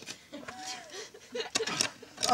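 Brief, low voice sounds from people nearby, then a quick cluster of sharp clicks about a second and a half in.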